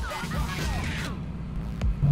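Background music over the low, steady sound of the Shelby Terlingua Mustang's Whipple-supercharged V8 running as the car pulls away at low speed.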